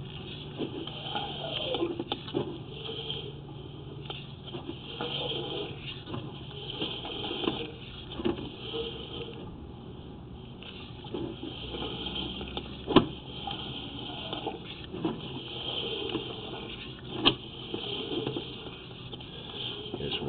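A sewer inspection camera's push cable being fed into a clay sewer line: a steady hiss with faint rubbing and light clicks throughout, and two sharp clicks about four seconds apart in the second half.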